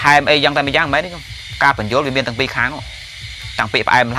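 A man speaking: a Buddhist sermon delivered in Khmer, in steady phrases with two short pauses.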